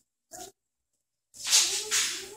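Boxer puppy whimpering: a short whine about a third of a second in, then a longer, noisier whine over the last half second. The audio drops out completely in between.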